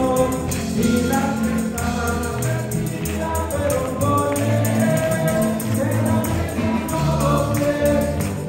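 Live church worship music: many voices singing together over a band, with a tambourine jingling in a steady rhythm.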